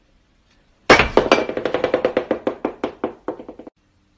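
A rapid series of ringing knocks, about six a second, loudest at the first stroke about a second in, fading, and cut off abruptly near the end.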